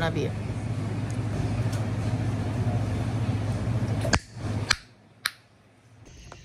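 Steady low hum and hiss of shop background noise, then three sharp clicks over about a second as the hum drops away to near silence.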